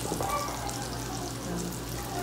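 Sliced hotdogs frying in oil in a wok: a steady sizzle with fine crackles.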